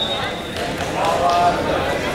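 Wrestlers scuffling and thudding on a gym mat during a takedown, with coaches and spectators shouting. A steady high whistle tone carries on through the first half second.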